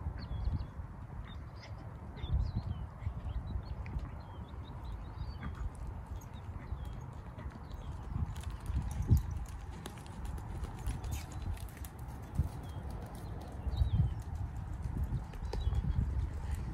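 A horse's hoofbeats on a sand arena as it trots and then canters, the strikes loudest about eight to eleven seconds in as it passes close by.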